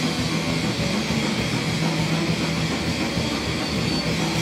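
Hardcore noise-punk band playing live: heavily distorted electric guitar over a pounding drum kit, a dense, unbroken wall of sound at steady loudness.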